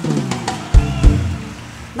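Electric bass guitar playing a short descending run, with two heavy low thumps about a second in.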